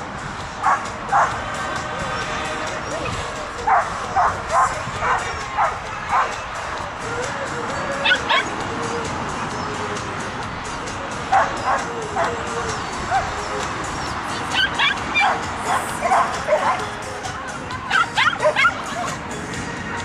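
Dog barking in quick bursts of several barks, a new cluster every few seconds, over steady outdoor background noise.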